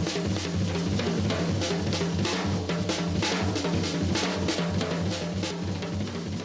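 Jazz drum kit solo: fast, dense strokes on snare, bass drum and cymbals running without a break.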